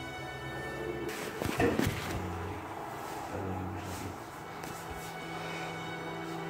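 Background music of long held notes, with a brief, louder noisy sound about a second and a half in.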